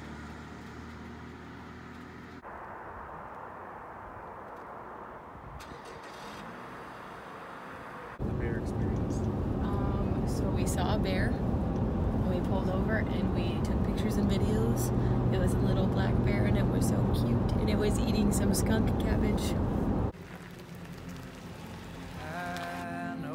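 Road noise inside a moving car's cabin, with voices over it. It is fairly quiet for the first several seconds, then jumps suddenly to a much louder, steady low rumble about eight seconds in, and drops back about two seconds before the end.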